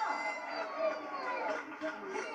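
Studio audience of children and adults shouting and cheering, many voices overlapping, with some drawn-out high yells.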